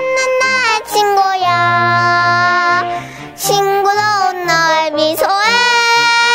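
A child singing a Korean children's song solo over instrumental accompaniment. The child holds one long note about one and a half seconds in, breaks briefly near the middle, then sings on.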